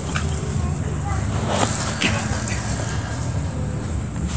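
Steady low hum with a thin, steady high whine above it, and a few faint, brief sounds scattered through.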